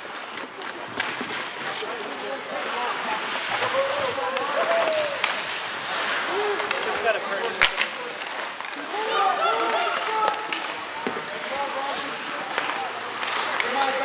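Rink ambience at an ice hockey game: many short shouts and calls from spectators and players over a steady hiss of skates on ice, with one sharp crack about seven and a half seconds in.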